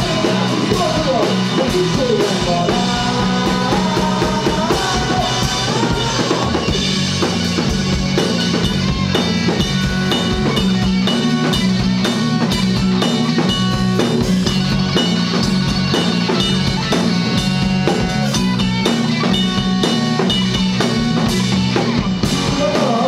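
Live rock band playing an instrumental passage: electric guitar with bending, sliding lead notes for the first several seconds, over a steady drum-kit beat.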